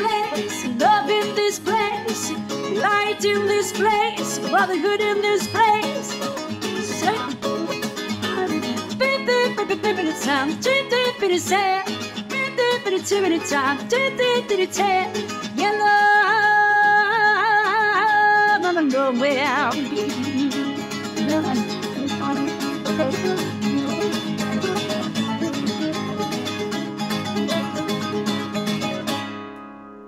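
A woman singing wordlessly over a strummed nylon-string classical guitar; her voice holds one long note about 16 to 18 seconds in, then the guitar plays on alone and fades out near the end.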